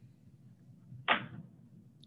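A quiet pause in video-call audio with faint background hiss. About a second in comes one short whoosh, cut off sharply at the top like the call's audio.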